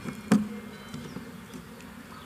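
A pause in speech: two short knocks in the first half-second, over a faint steady background buzz.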